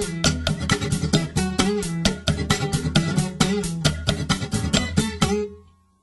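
Instrumental guitar music: a run of quick, evenly spaced guitar notes over a steady bass line. The track ends about five and a half seconds in, fading to near silence.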